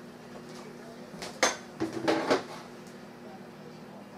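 A few clinks and knocks of kitchenware, such as a measuring cup set down against the pot or counter, clustered between about one and a half and two and a half seconds in, over a faint steady hum.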